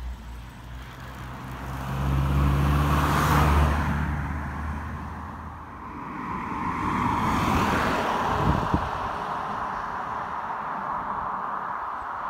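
Road vehicles passing close by. A car's engine hum and tyre noise build to a peak about three and a half seconds in and fade, then a second vehicle's tyre noise swells and passes a few seconds later, with a brief knock just after.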